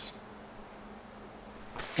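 Quiet room tone with a faint steady hum during a pause in conversation, and a short hiss near the end.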